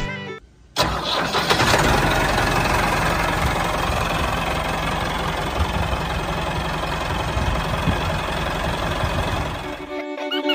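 A tractor's diesel engine starts suddenly about a second in, then runs steadily at idle with a fast, even firing beat.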